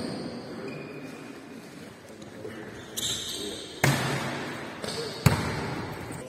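Basketballs bouncing on a hardwood gym floor, a few irregular bounces in the second half, each echoing in the large sports hall.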